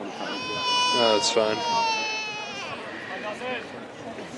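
A long, high-pitched cry held on one steady pitch for about two seconds, with people talking at the same time.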